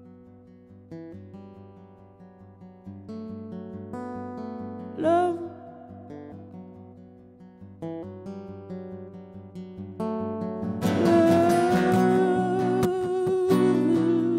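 Solo acoustic guitar playing slow picked notes that ring and fade. About ten seconds in it swells into fuller strumming under a long, wavering wordless sung note.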